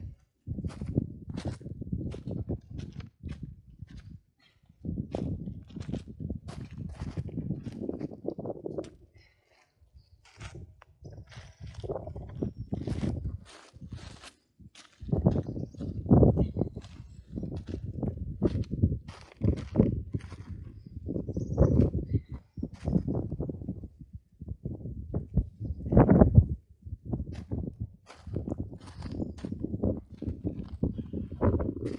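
Work boots crunching on gravel in irregular steps, with stones being picked up and set down against other rocks, giving short knocks; the loudest knock comes about 26 seconds in.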